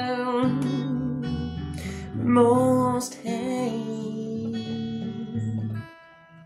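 A woman singing long, sliding notes over a played acoustic guitar, the guitar moving through a changing series of notes; the sound stops abruptly just before the end.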